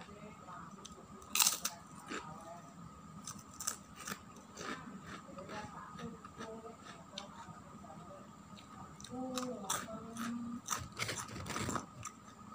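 Close-up crunching and chewing of fried krupuk crackers, irregular crisp crunches with the loudest bite about a second and a half in.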